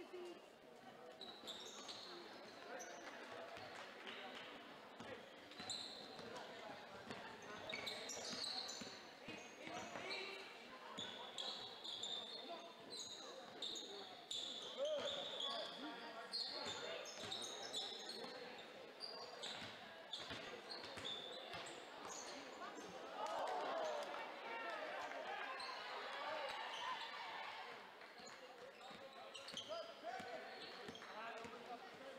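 Basketball game sounds in a gymnasium: a basketball bouncing on the hardwood floor in repeated knocks, short high sneaker squeaks, and a steady babble of spectators' and players' voices echoing in the hall.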